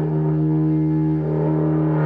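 Carbon-and-kevlar slide didgeridoo droning on one steady held note, without rhythmic pulses, its overtones shifting slightly about halfway through.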